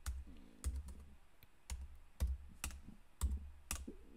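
Computer keyboard typing: a handful of short, unevenly spaced keystrokes as a line of code is entered.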